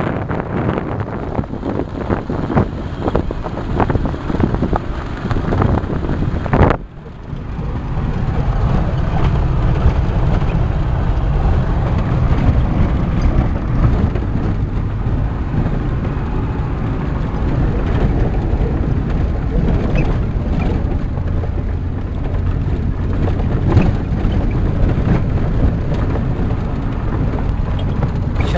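A vehicle driving on a rough unpaved gravel road, heard from inside the cabin as a steady engine and road rumble, with wind on the microphone in the first seconds. The sound drops out briefly about seven seconds in, then resumes.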